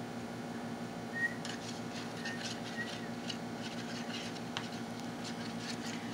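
Faint scraping and ticking of a stick stirring white glue, water and green colouring in a cup, over a steady hum.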